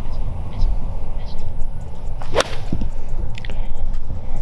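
A golf club swung through and striking the ball, one sharp crack about two and a half seconds in, over a steady low rumble of wind on the microphone.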